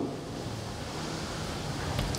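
Steady, even hiss of room noise in a large hall, with no voice and no distinct events.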